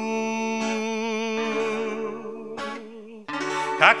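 Russian bard song: a man sings one long held note with vibrato over fingerpicked acoustic guitar. About two and a half seconds in the note ends and the guitar plays alone briefly, then he starts the next sung line near the end.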